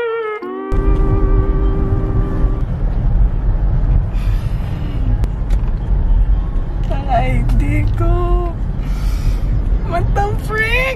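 Steady low rumble of a car's interior while it is being driven. A short held musical tone plays over the first couple of seconds.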